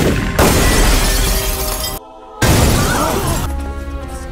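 Window glass shattering as a body crashes out through it: a sudden crash and a spray of breaking glass lasting about two seconds. After a short dead gap comes a second loud burst of crashing noise, over background film music.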